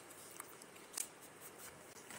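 Paper being handled: a few faint, crisp rustles and ticks, the sharpest about a second in.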